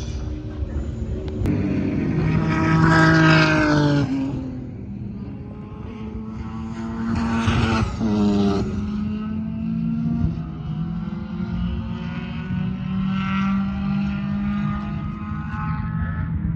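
Racing cars lapping the circuit at speed: one passes loudly about three seconds in with its engine note falling in pitch, another passes around seven to eight seconds in, and then several engines carry on further off, their pitch climbing slowly as they accelerate.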